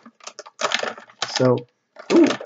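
Crinkling and rustling of a freshly opened snack package being handled, in several short crackly bursts in the first second.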